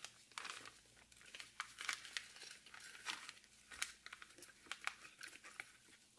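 Small clear plastic parts bag crinkling as it is handled and opened, a faint run of irregular crackles and small clicks.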